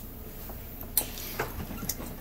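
A few light, separate clicks and knocks, roughly half a second apart, over low background noise.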